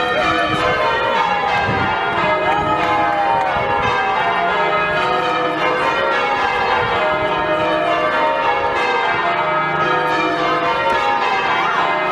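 Bristol Cathedral's bells ringing a celebratory peal, many bells sounding in quick succession in a dense, continuous ringing that comes in loudly at the start.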